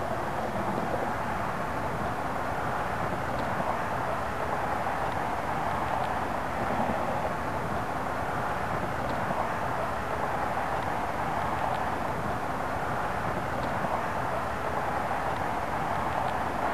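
Steady outdoor background rush, an even noise without distinct events, with a few faint tiny ticks.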